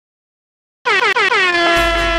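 DJ air-horn sound effect opening a remix: after a moment of silence, four short blasts that each dip in pitch, then one long held note, with a deep bass beat coming in near the end.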